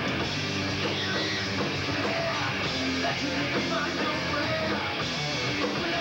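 Live rock band playing on stage: electric guitar and drums, steady and continuous.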